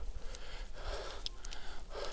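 Cyclist breathing hard in a steady rhythm while pedalling up a climb, over a steady low rumble.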